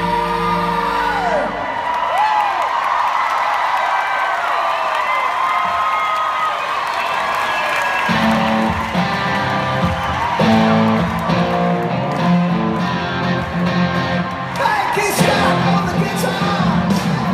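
Live rock band playing, with singing and guitar. The bass and low end drop away after about a second and a half and come back in about eight seconds in. Audience whoops rise over the music early on.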